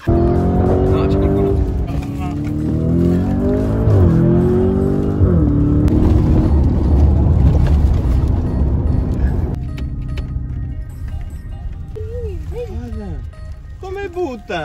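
High-performance car engine revving and accelerating hard. Its pitch climbs and falls back sharply twice, about four and five seconds in, like gear changes. It then runs quieter and steadier for the last few seconds.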